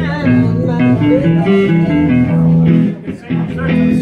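Live band playing, electric guitars over a moving low riff, with a brief drop in volume a little before three seconds in.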